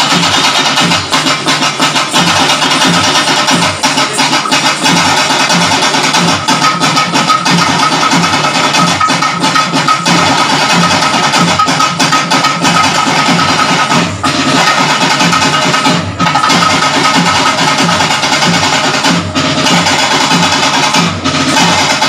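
Music led by drums beating a steady, driving rhythm, with a held high note running through it.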